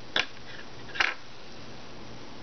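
Two short, sharp snips of small fly-tying scissors about a second apart, the second louder, trimming saddle hackle feathers to length.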